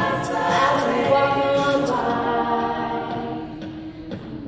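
A cappella show choir of female voices holding sustained chords, changing chord about halfway through and dropping away near the end.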